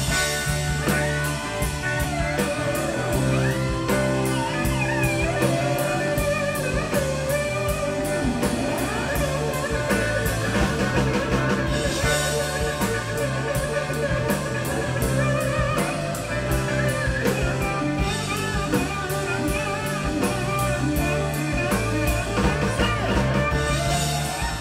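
Live rock band playing an instrumental blues-rock jam: an electric guitar lead with bent notes over a steady drum kit beat with cymbals, bass and keyboard chords, with no singing.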